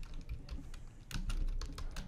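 Typing on a computer keyboard: a run of quick, irregular key clicks, thinning out briefly about half a second in before picking up again.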